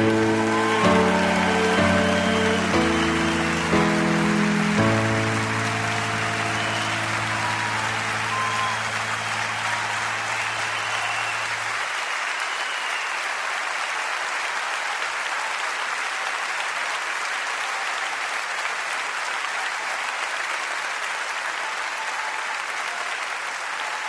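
A live song's last chords, ending on a held final chord that dies away about twelve seconds in, over steady audience applause that continues alone afterwards.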